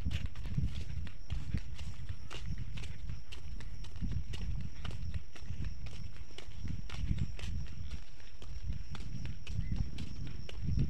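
Footsteps of a person walking on a dirt path at a steady pace, heard as soft low thuds about one to two a second, mixed with the handling noise of a handheld camera.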